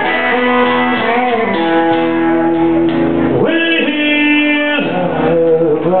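Live country music played by a band: guitar and a man singing, with nothing recorded above the middle of the range, so it sounds dull.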